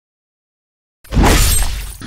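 Dead silence for about a second, then a sudden loud crash sound effect that dies away within the second.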